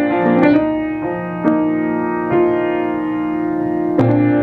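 Grand piano playing slow, held chords, with new notes struck a few times and left ringing.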